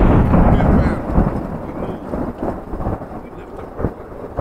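Thunder: a loud rolling rumble that starts suddenly out of silence, peaks about a second in and slowly fades away, a thunderclap sound effect marking the spoken toast.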